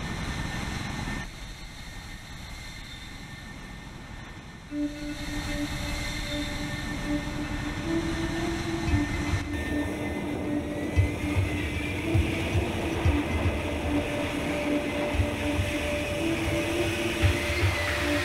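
Jet fighter noise: from about five seconds in, an F-35B's F135 engine and lift fan run in short-takeoff/vertical-landing mode with a steady hum over a rushing noise, as the jet lifts off the runway into a hover. The first seconds are quieter jet noise.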